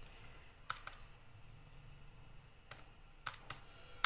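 Buttons of a Casio fx-570ES Plus scientific calculator being pressed one by one: a handful of faint, separate plastic key clicks as a sum is keyed in.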